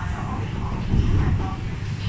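Cabin noise inside a moving MTR East Rail Line MLR electric train: a steady low running rumble that swells about a second in.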